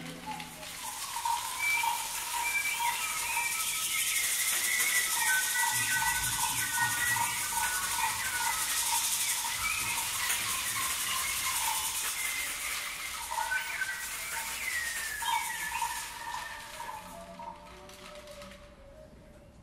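An imitated forest soundscape made with hand percussion and whistles: a steady shaking, hissing sound like a rainstick, with many short bird-like whistled chirps and glides over it. It fades out about two seconds before the end.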